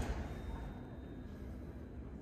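Steady low background rumble and faint hiss of room tone, with no distinct sound events.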